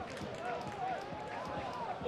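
Faint background voices talking under a pause in the commentary, with a low murmur and a few light ticks.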